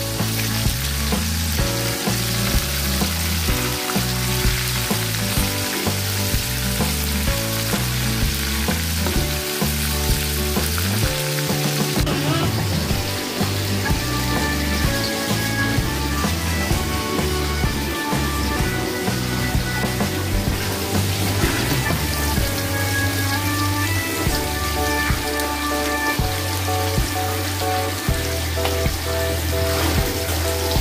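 Oil sizzling steadily as pieces of bird meat deep-fry in a wok, under background music with a stepping bass line.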